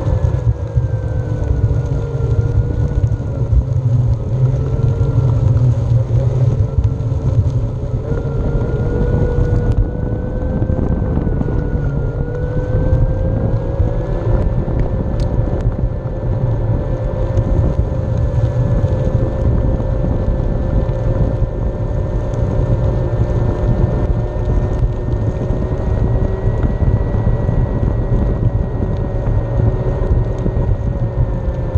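Onewheel electric hub motor whining as the board rolls along pavement, its pitch dipping and rising with speed and sitting highest in the later part. Underneath runs a steady low rumble of tyre on asphalt and wind on the microphone.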